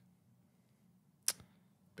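A quiet pause with faint room tone, broken just over a second in by one sharp, short click.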